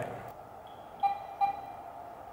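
Two short electronic beeps about half a second apart, from a studio flash power pack as its lights are being switched over.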